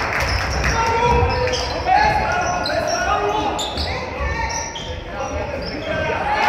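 A basketball game on a wooden sports-hall court: indistinct players' shouts and calls over a ball bouncing, all echoing in the large hall.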